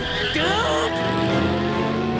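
Car engine revving up as the accelerator is floored, rising in pitch about half a second in, then running steadily at high revs.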